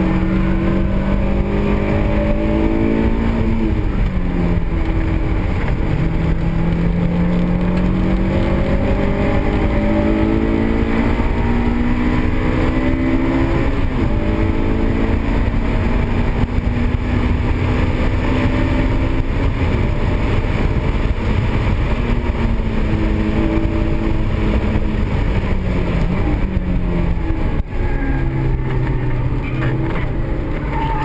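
Honda S2000's four-cylinder engine heard from inside the cabin while being driven hard on track. The note climbs steadily through the revs and drops back sharply several times, over steady road and wind noise.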